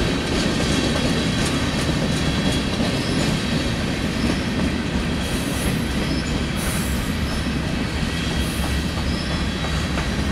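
Freight cars rolling slowly past on steel wheels: a steady rumble with clacking over the rail joints. Brief, faint high-pitched wheel squeals come and go.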